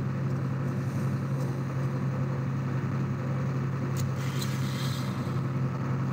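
Tractor engine running with a steady low drone, holding an even pitch. There is a faint click about four seconds in.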